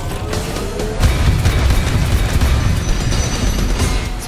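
Trailer music over a roof-mounted minigun: a rising whine in the first second, then rapid, continuous, loud fire with booming low end from about a second in.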